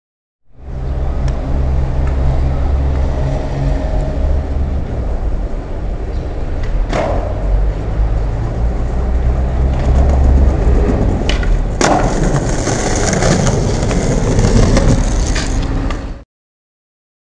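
Skateboard wheels rolling over pavement in a steady rumble, with sharp clacks of the board about seven seconds in and again near twelve seconds in.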